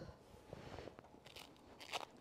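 Faint rustling and light scraping as a fabric carry bag is handled in its cardboard box.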